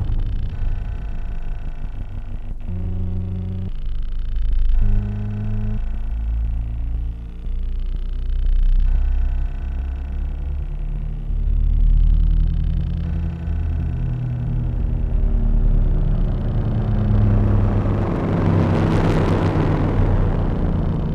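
Electronic computer music: low sustained synthesized tones in layered stacks that shift in blocks every second or two, over a deep rumbling bass. A sharp click comes a couple of seconds in, and a hiss swells up near the end.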